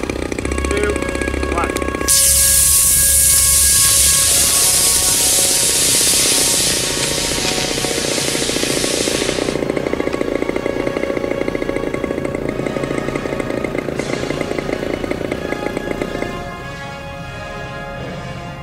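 Aerotech 18mm D2.3 rocket glider motor igniting about two seconds in and burning with a steady hiss for about seven and a half seconds before cutting out, over background music.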